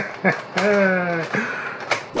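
A man's voice: one drawn-out vocal sound with slightly falling pitch, then a short laugh, and a sharp click near the end.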